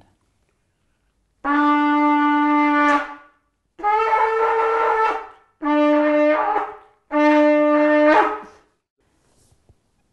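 A long, straight silver trumpet of the biblical kind, blown in four loud blasts. The first blast is the longest and is held on one note. The others move between a lower and a higher note.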